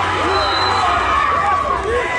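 Football spectators close by shouting and cheering, many voices overlapping loudly.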